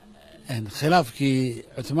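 Speech only: a man talking, starting about half a second in after a brief pause.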